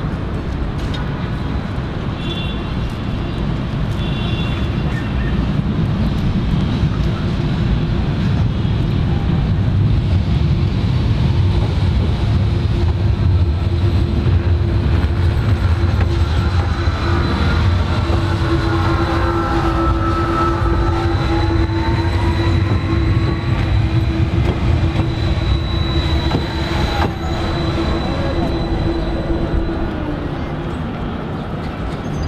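Electric trams on the Alexandria Ramleh line: a standing tram hums steadily while a second tram rolls in on the next track. The low rumble grows louder from about a fifth of the way in, and whining tones glide up and down in the second half as the arriving tram draws up.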